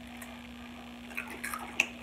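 Faint chewing and crunching of Takis rolled tortilla chips: a few small crackles in the second half, with one sharper click near the end, over a steady low hum.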